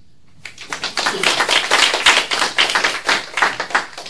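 Audience applauding. The clapping starts about half a second in and fades out near the end.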